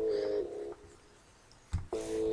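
Sparse hip-hop instrumental beat played back in a small room: a held synth chord that stops under a second in, a near-silent gap, then a single deep bass or kick hit near the end.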